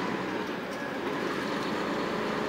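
Steady drone of a Hino truck's engine and road noise heard from inside the cab while driving.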